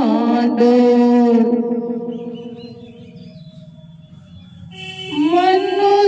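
A woman singing a devotional folk song solo into a handheld microphone. She holds a long note that fades away about three seconds in, then takes up the next line about five seconds in.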